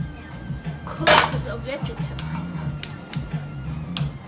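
Kitchen clatter of metal cookware over steady background music: a loud clank of pots or utensils about a second in, then a few sharp clicks near the end.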